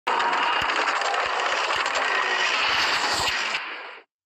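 Glitch-style logo-intro sound effect: a dense crackling, static-like noise with many sharp clicks, fading out over the last half second.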